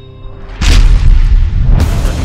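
Television intro music: a held chord fades out, then a loud, deep boom hit lands about half a second in and another just before the end as a rhythmic beat starts.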